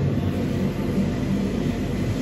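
Room air conditioner running with a steady low hum and rumble.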